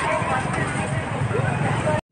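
Street-market ambience: people talking in the background over a motor vehicle engine running.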